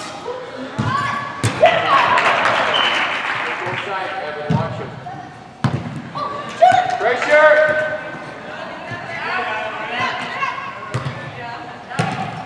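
Voices shouting and cheering in a large indoor soccer hall, over sharp thuds of a soccer ball being kicked; the loudest thuds come about a second and a half in and about halfway through.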